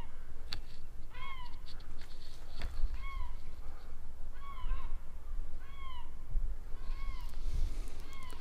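A cat meowing: short calls, each rising then falling in pitch, repeated about every second and a half.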